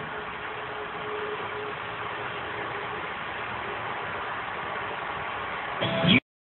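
A steady, even hiss with no clear pitch, likely the soundtrack of the low-quality logo video playing in the miniplayer, rising into a short louder sound near the end.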